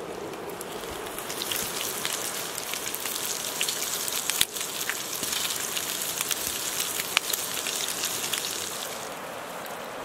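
Bacon sizzling in a cast-iron skillet over a campfire: a steady hiss full of small sharp pops, starting about a second in and dropping away near the end.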